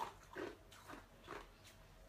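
Ice being chewed, crunching between the teeth in about five short, evenly spaced crunches.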